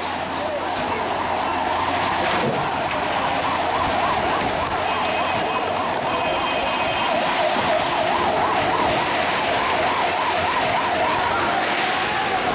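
Siren of a security vehicle sounding a rapid warble, its pitch swinging quickly up and down several times a second, over a steady rush of street noise.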